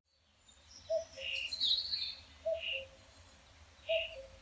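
Birds chirping over a faint steady outdoor background, with short calls about a second in, around two and a half seconds and again near the end.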